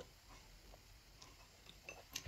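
Near silence: room tone, with one faint click at the start.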